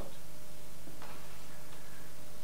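Pause in speech with steady room tone: a low constant hum and faint hiss, with one faint tap about a second in.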